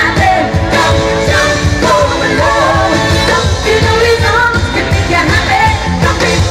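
Female vocal group singing a pop song live into microphones over loud backing music with a steady beat.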